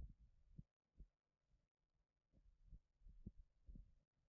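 Near silence: room tone with a scattering of faint, dull low thuds at irregular intervals.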